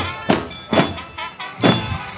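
Marching band percussion: about four loud, unevenly spaced drum and cymbal hits, with high ringing tones sustained between them.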